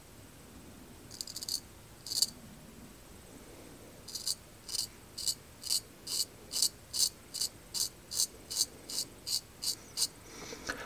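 Straight razor shaving hair off the back of a hand in short crisp strokes, the crackle of a sharp edge cutting hair: two scrapes, then from about four seconds in a steady run of quick strokes, about two a second, coming slightly faster near the end.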